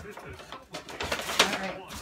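Brown paper gift bag rustling and crinkling as it is handled and opened, with one sharp crinkle a little past halfway.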